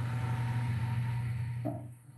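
Steady low hum and hiss from an open microphone line while the speaker pauses, with a short hesitant 'uh' near the end.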